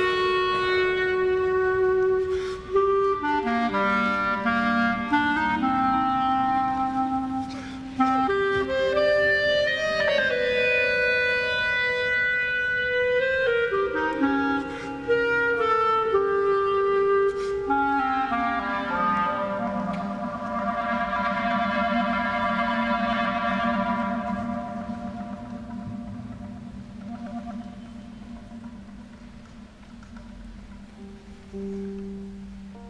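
Solo clarinet playing a slow melody, one note at a time, with a falling run partway through. It ends on a long low note that slowly fades away.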